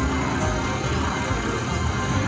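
Buffalo Rush slot machine playing its electronic bonus music while the top wheel spins to award extra buffalo, over steady casino din.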